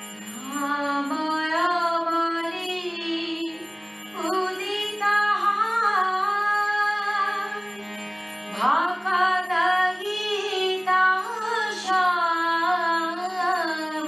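A woman singing a devotional bhajan in long, ornamented phrases over harmonium accompaniment holding a steady drone note. She sings three phrases, the third opening with a sharp upward slide about eight and a half seconds in.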